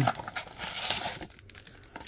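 Card packs crinkling and rustling against the cardboard box as they are slid out of a sports-card blaster box, busiest in the first second and then dying down.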